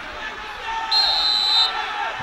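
Referee's whistle, one short shrill blast of under a second about a second in, signalling that the penalty kick may be taken, over the voices of players and spectators.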